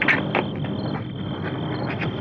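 Crickets chirping in a steady high trill, with a couple of sharp clicks near the start.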